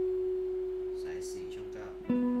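Electric guitar with Fender American Standard pickups, a single clean note left ringing and slowly fading.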